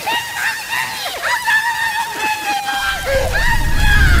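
High-pitched cartoon character voice wailing in a long, broken cry, held notes dipping and swooping in pitch. A low rumble swells in underneath near the end.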